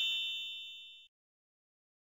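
The ringing tail of a bright chime sound effect, dying away about a second in, followed by silence.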